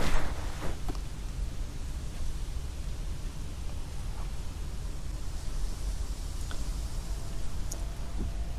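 Steady low rumble and hiss of outdoor background noise, with faint rustles and clicks as the power station is handled.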